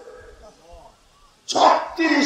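A dog barking faintly a few short times in a lull. A man's voice then speaks loudly from about one and a half seconds in.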